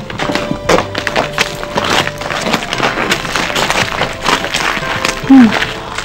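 Footsteps of several people crunching on gravel as they walk, over background music, with a woman's short "hmm" near the end.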